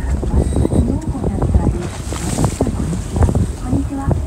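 Wind buffeting the microphone and sea noise on a fishing boat, with many short knocks and a hissing rush of water about two seconds in. People are talking in the background.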